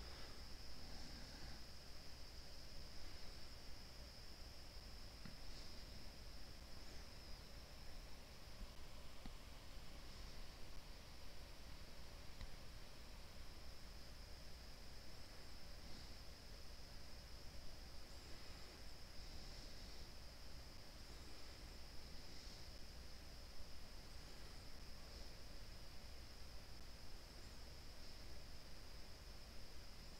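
Faint steady room tone: a low hiss with a thin, steady high-pitched whine and no distinct sounds.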